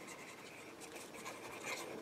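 Faint scratchy rubbing of a liquid glue bottle's tip being drawn in squiggles across the back of a piece of cardstock.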